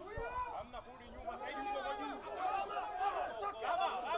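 Several voices talking and calling out over one another, a chatter of people around the pitch.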